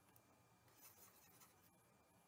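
Near silence: room tone, with a faint soft scratching or rubbing about a second in.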